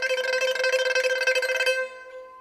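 Pipa solo: a fast tremolo of rapidly repeated plucks on one held note, loud and steady, breaking off near the end to a softer ringing tone.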